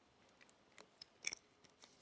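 Near silence: room tone with a few faint short clicks, the loudest a little past the middle.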